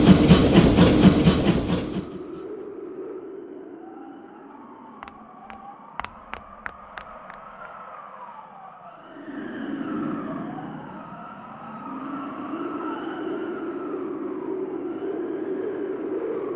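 A train passing close, loud and rhythmic, for the first two seconds, then fading away. It is followed by several overlapping wailing tones that rise and fall like sirens, with a few sharp clicks about five to seven seconds in.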